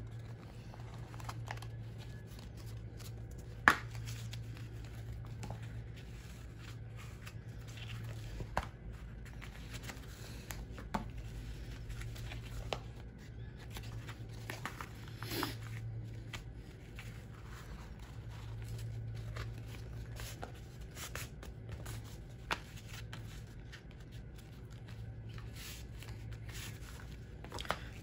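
Watercolour-painted paper being folded accordion-style and creased by hand: soft rustling with scattered sharp taps and clicks, the sharpest about four seconds in. A low steady hum runs underneath.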